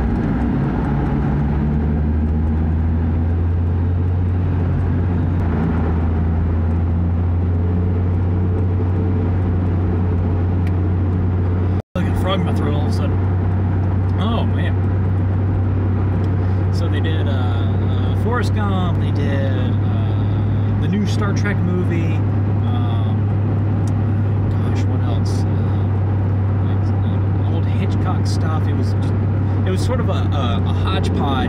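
Steady low drone of road and engine noise inside a moving car, cut by a momentary dropout about twelve seconds in; voices run over the drone after that.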